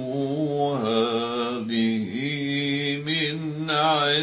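An old man's voice reciting the Quran in a melodic, chanted style, drawing out long held notes with a slight waver in pitch. The voice dips and breaks briefly about two seconds in, then carries on.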